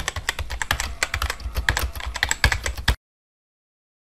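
Rapid, irregular clicking like fast typing on a computer keyboard, with a low thudding beneath. It lasts about three seconds and cuts off suddenly.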